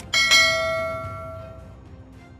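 A single bell chime struck just after the start, ringing with bright overtones and fading away over about a second and a half, over faint background music.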